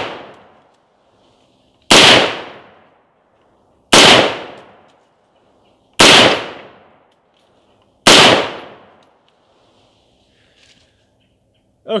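5.56 mm AR-style rifle fired four times, about two seconds apart, each loud shot trailing off in a long echo.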